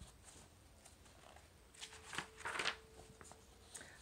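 A picture-book page being turned by hand: a short paper rustle about two seconds in, with a few soft clicks around it.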